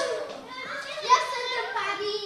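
Several children's voices talking and calling out over one another: indistinct chatter of children at play.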